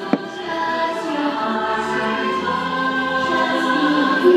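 Choral music from the fireworks show soundtrack, a choir singing long held notes, with a single sharp firework bang just after the start.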